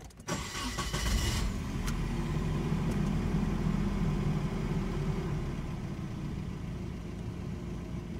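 A 1995 Nissan 240SX's 2.4-litre four-cylinder engine is cranked by the starter and catches within about a second, then runs at a steady idle that eases slightly lower near the end. Heard from inside the cabin.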